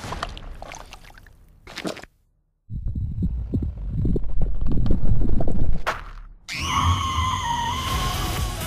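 Animated-film trailer sound effects. After a brief cut to silence comes a loud, low, crackling rumble of several seconds. About six and a half seconds in it gives way to a rising electronic music sting.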